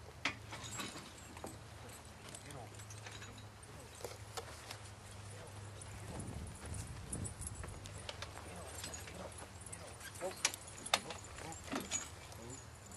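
Horses stamping and shifting in harness: scattered hoof clops and sharp clicks of harness hardware, loudest in a cluster near the end, over a low steady hum and indistinct voices.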